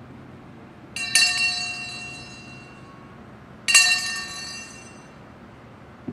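Brass hand bell struck twice, about a second in and again just under four seconds in. Each stroke rings on and fades over a second or so, the first with a quick double strike. It is a memorial toll.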